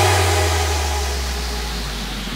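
Hardstyle track in a break: a deep, sustained bass note fades slowly under a hiss of noise that dies away, with no melody or beat.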